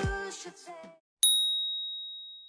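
Electronic background music fades out within the first second. A single bright ding chime then sounds and rings on with a slowly fading tail: an edited transition sound effect marking the switch to the next exercise.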